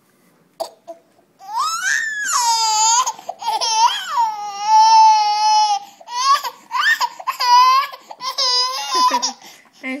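Baby squealing in a run of high-pitched shrieks that swoop up and fall back, one held for about two seconds near the middle.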